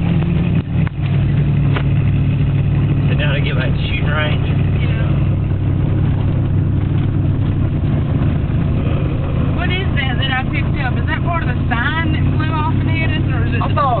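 Pickup truck engine running steadily at idle, heard from inside the cab as an even low drone. It has a note that sounds carbureted.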